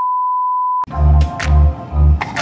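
A steady pure test-tone beep, the kind that goes with TV colour bars, held for just under a second and cut off abruptly. Background music with a strong bass beat starts straight after it.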